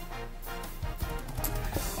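Quiet background music with a few faint clicks.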